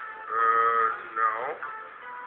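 A man's voice drawing out a long sung-like "no": one held note, then a second that slides down in pitch, heard through computer speakers.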